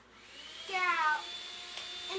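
A child's voice giving a drawn-out call that falls slightly in pitch, starting about two-thirds of a second in, followed by a lower held tone.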